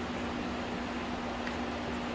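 Steady mechanical room hum with a constant low tone and an even hiss, unchanging throughout.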